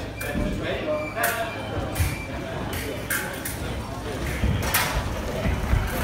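Footsteps and shoe taps on a metal fencing strip, a run of sharp separate clicks, over voices talking in the hall.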